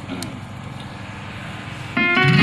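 Steady, low background noise of an open-air gathering, with a faint voice briefly near the start.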